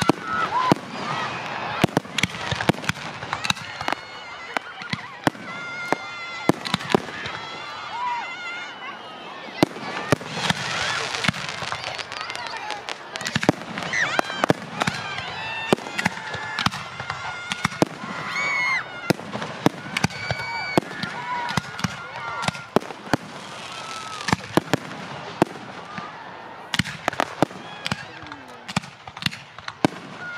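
Aerial fireworks shells bursting, dozens of sharp bangs at irregular intervals, over continuous crowd voices and shouts.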